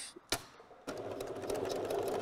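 Pfaff Select 4.2 electric sewing machine starting up about a second in and stitching steadily at a fast, even rate through thick wool coating fabric, after a single sharp click.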